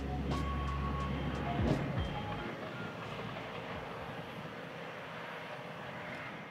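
A steady roar of noise with a deep rumble under it for the first two seconds or so, after which the rumble drops away and a lighter, even roar carries on.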